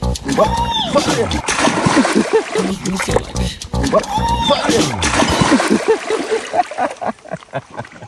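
Shallow river water splashing as a man wades in and sits down in it holding a large trairão, with a repeated edited sound or music track laid over it.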